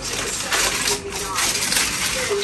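Aluminium foil crinkling irregularly as a foil-wrapped shawarma is handled and unwrapped.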